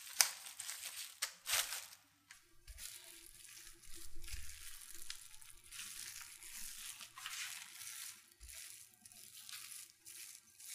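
Plastic cling wrap crinkling as it is pressed over a mound of grated potato. From about two seconds in, a wooden rolling pin is rolled back and forth over the wrap, giving a continuous rustling crinkle that swells with each stroke.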